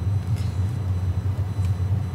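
A steady low drone of car cabin noise, from the engine and the road, heard inside a car as it is driven.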